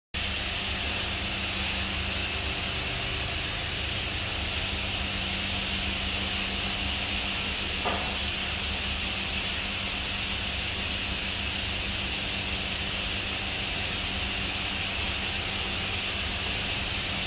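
Steady hum and hiss of machinery running in a workshop, unchanging throughout, with one brief knock about eight seconds in.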